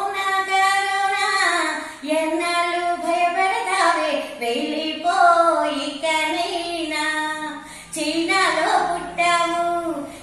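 A woman singing a Telugu parody song solo with no instruments, in phrases of a few seconds with short breaks between them.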